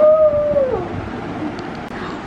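A child's drawn-out howling "oooo", sliding up in pitch, held for about half a second, then falling away before a second in.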